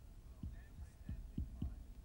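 A marker writing on a whiteboard on an easel, faint, with several soft low knocks and a little thin squeak from the pen.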